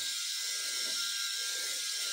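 VeroShave 2.0 rotary electric head shaver running steadily while dry-shaving a scalp: an even high whir with a faint steady hum. The motor holds its speed under pressure, running strong.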